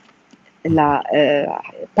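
A short pause, then a person's voice for about a second with drawn-out, bending vocal sounds, then a brief lull.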